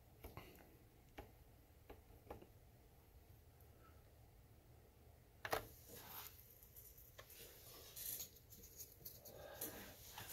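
Near silence with a few faint, scattered clicks of a digital oscilloscope's front-panel buttons being pressed, and one slightly louder knock about halfway through.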